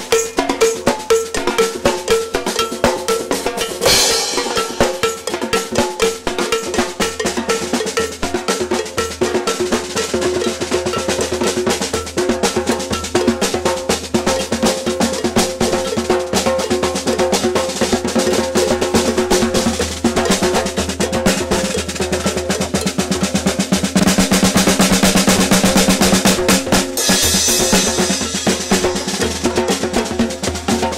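Percussion band drumming a fast, steady rhythm on surdos, smaller drums and stand-mounted cymbals. A cymbal crash comes about four seconds in, and the playing grows louder, with more cymbal, near the end.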